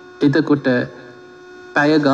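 A man preaching in short phrases, with a pause of about a second in the middle. A steady electrical hum runs beneath the voice.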